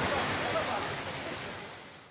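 Heavy rain pouring onto a waterlogged street, a steady hiss that fades out gradually toward the end.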